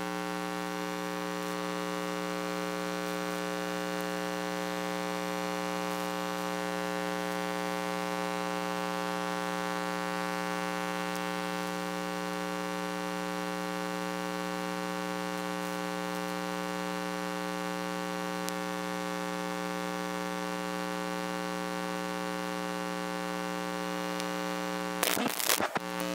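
Steady electrical mains hum: an unchanging buzzing stack of tones with no game sound beneath it. It is the sign of a dropout in the commentary audio feed. About 25 seconds in it breaks up as the sound comes back.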